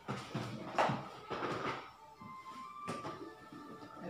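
Off-camera clatter and knocks of plastic food containers being handled and taken out, in a few separate strokes. A short steady tone sounds about two to three seconds in.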